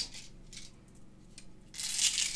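A few faint clicks from handling, then near the end a dense rattle of loose plastic airsoft BBs being shaken or poured in the hand.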